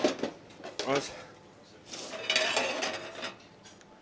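Metal pans and utensils clattering on a kitchen range. There is a sharp knock at the start, then a rough, hissy stretch of about a second and a half beginning about two seconds in.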